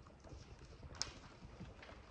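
Typing on a laptop keyboard: soft, irregular key clicks, with one sharper click about a second in.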